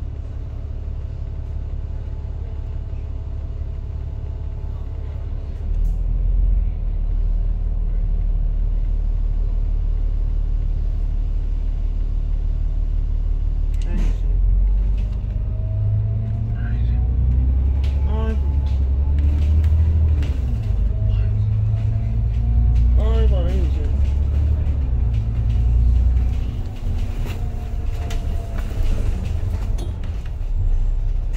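Double-decker bus engine idling with a low rumble, then pulling away and accelerating, its pitch rising and falling through several gear changes in the second half.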